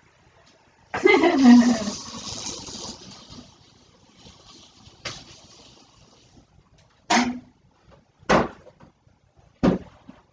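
A loud vocal sound with a falling pitch about a second in, then a click and three short, sharp knocks of things being handled.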